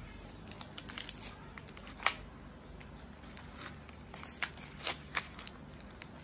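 Paper wrapping rustling and crinkling in the hands as a thin cord is wound and pulled tight around a bouquet's paper-wrapped stems, with scattered sharp clicks. The loudest click comes about two seconds in.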